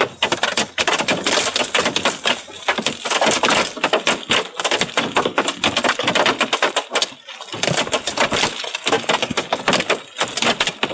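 Hail striking a car's windshield and roof, heard from inside the car: a dense, unbroken clatter of small hits that eases briefly about seven seconds in.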